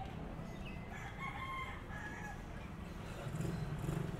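A rooster crowing once, a call of a second or so starting about a second in, over steady street background noise. A low rumble grows near the end.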